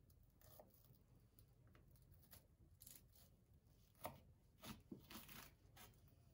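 Faint crisp cuts of a kitchen knife slicing lengthwise through a fresh madake (timber bamboo) shoot on a wooden cutting board. The cuts are scattered and soft at first, then sharper and closer together from about four seconds in.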